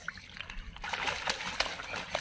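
Hands splashing and squelching in shallow muddy water and wet grass, with scattered small wet clicks, getting louder about a second in.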